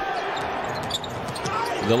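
A basketball being dribbled on a hardwood court over a steady background of arena noise.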